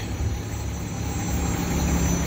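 Low, steady rumble of a vehicle engine and street traffic, growing a little louder toward the end.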